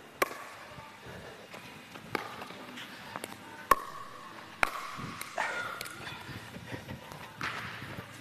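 A pickleball rally: sharp, hollow pocks of paddles striking the plastic ball and the ball bouncing on the court, about six of them spaced roughly a second apart.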